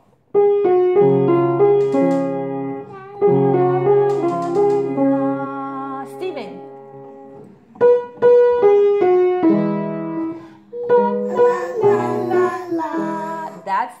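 Acoustic piano played with held chords under a melody line. The playing breaks off briefly about halfway through, then carries on.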